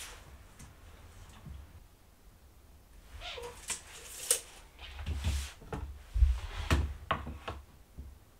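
Handling noises from measuring and marking a wooden board: a steel tape measure pulled out with short swishes, then several knocks and thuds as the board and a metal square are moved and set down, with scattered small clicks.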